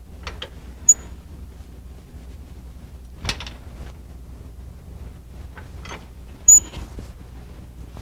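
Rope lock on a counterweight fly system's locking rail being worked open and closed by its handle: a few scattered metal clicks and clunks, two of them sharp clinks with a brief high ring, about a second in and again near the end. The lock is being tested for adjustment, opening and closing without excessive force while still gripping the rope.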